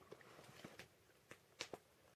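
Faint crackling of a small wood campfire: a few scattered sharp pops, the loudest about one and a half seconds in.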